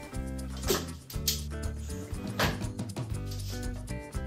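Background music with a steady bass line, with a few brief sharp noises over it.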